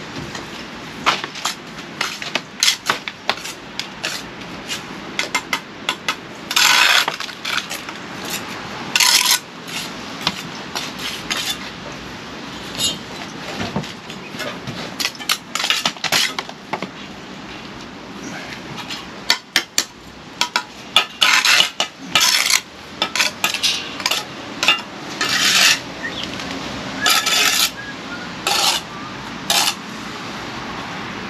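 Steel bricklaying trowel clinking and tapping on bricks and scraping mortar as facing bricks are laid: many sharp taps throughout, with longer scrapes every few seconds.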